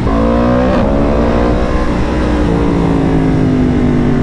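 Yamaha MT-10's crossplane inline-four engine under the rider: the note jumps up and climbs for under a second, then eases into a slowly falling pitch as the bike rolls on, over low wind rumble.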